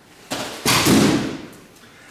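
A dull knock followed by a louder, roughly one-second burst of thumping and rustling from wrapped model-plane parts being handled and pulled from their packing box.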